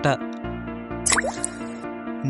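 Background music with steady held tones, carried on through a pause in the narration, with a short upward-gliding blip sound effect about a second in that marks the cut to the next numbered fact.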